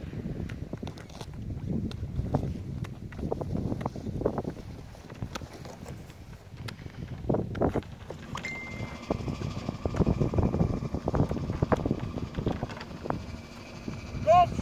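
Footsteps crunching on crusted, icy snow at an irregular walking pace, with wind rumbling on the microphone.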